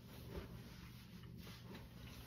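Near silence: faint room tone, with one soft brief noise about half a second in.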